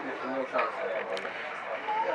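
Low, brief snatches of male voices over faint background noise, with no clear words.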